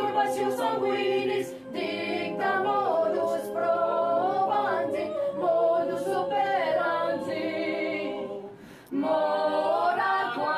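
Mixed choir of men's and women's voices singing a cappella: sustained chords with moving upper lines. The voices ease off briefly about two seconds in, then nearly stop near the end before coming back in together.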